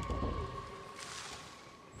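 Quiet horror-film soundtrack: a faint held tone over a soft hiss, fading lower toward the end, with a brief soft sound just at the start.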